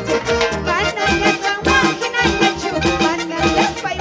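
Andean dance music played by a harp-led band with violins, with a steady, quick beat.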